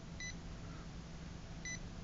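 Piezoelectric speaker of a DIY Arduino light harp giving three very short, faint square-wave beeps on the same high note, two close together at the start and one near the end. Each beep is a note triggered as a finger comes near the 10 mm blue LED sensor.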